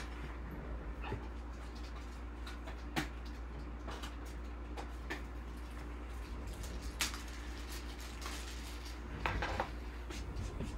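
Light, sharp clicks of trading cards and plastic card holders being handled on a table, one about every two seconds, with a short rustle near the end, over a steady low hum.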